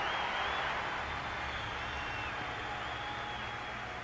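Live audience applauding and cheering, with a few whistles, slowly dying down.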